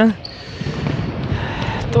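Echoing sports-hall background: scattered light thuds of feet and a ball on the indoor court, with the hall's reverberation.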